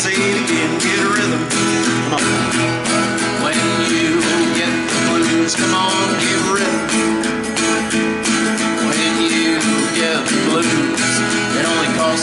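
Acoustic guitar strummed in a steady rhythm, with a harmonica in a neck rack played over it as an instrumental break.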